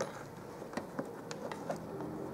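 A few small, faint clicks against quiet room tone.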